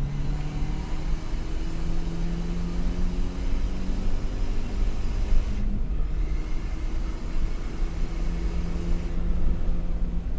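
Car engine under acceleration, heard from inside the cabin, its pitch climbing steadily, with a brief break about six seconds in before it climbs again. Heavy low road and tyre rumble runs underneath.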